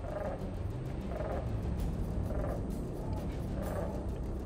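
A crow cawing four times, about a second apart: an alarm at a hawk overhead.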